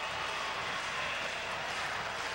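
Steady crowd noise from a stadium full of spectators, an even wash of many voices with no single sound standing out.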